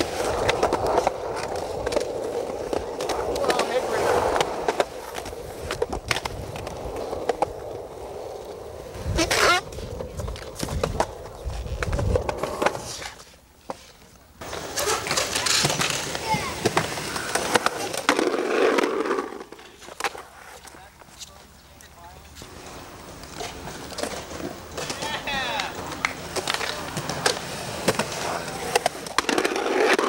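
Skateboard wheels rolling over rough concrete, with repeated clacks and knocks as the board hits and scrapes concrete edges. The rolling dips briefly about halfway through.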